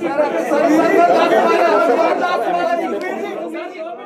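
Many voices talking over one another in a large, reverberant room: general chatter as a press conference breaks up, fading toward the end.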